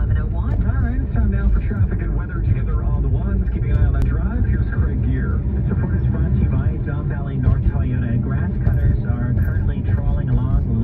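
Steady low rumble of road and engine noise heard inside a moving car's cabin, with an indistinct voice over it.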